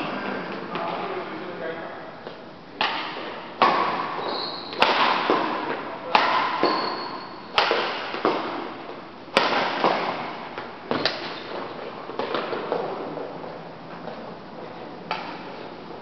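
Badminton rackets striking a shuttlecock in a rally: about eight sharp cracks one to two seconds apart, each echoing in a large hall.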